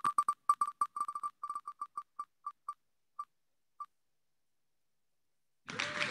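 Spinning prize wheel's electronic tick sound, the ticks coming further and further apart as the wheel slows and stopping about four seconds in. Near the end a winner's applause sound effect starts.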